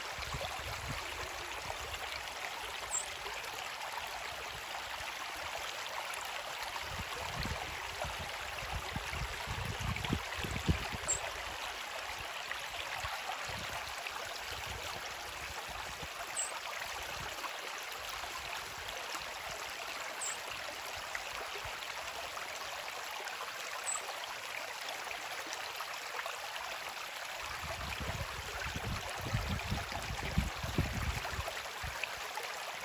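Small brook flowing: a steady rush and trickle of running water. Low bumps sound on the microphone around ten seconds in and again near the end, and a faint short high peep comes every few seconds.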